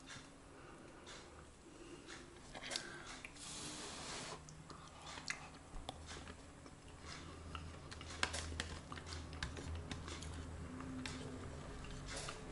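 A person chewing a mouthful of soft pie filling and mash, with small wet mouth noises and scattered short clicks.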